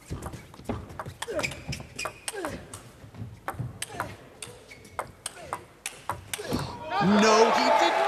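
Table tennis rally: the celluloid-plastic ball clicks sharply off rubber-faced bats and the table several times a second, with short squeaks from players' shoes on the court floor. About seven seconds in, as the point ends, the crowd breaks into loud cheering and shouting.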